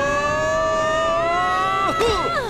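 A cartoon child's long scream of fright, held high on one note and rising slightly, then dropping in pitch and breaking off near the end.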